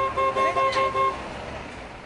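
A horn sounds a fixed two-tone chord in a rapid string of short toots, about seven in the first second, then stops, leaving the low noise of the street.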